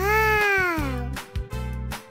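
A voice-acted character making one long 'mmm' of tasting delight that rises then falls in pitch, lasting about a second, over upbeat background music.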